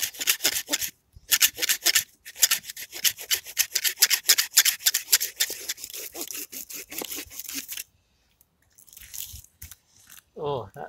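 Folding pruning saw cutting through a woody stump at ground level in quick back-and-forth strokes, about four a second. The strokes break off briefly about two seconds in, then run on until about two seconds before the end.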